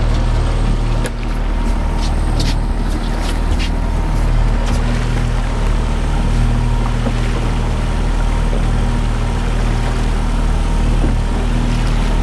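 Outboard motor on a trolling fishing boat running steadily, a low even drone that holds its pitch throughout.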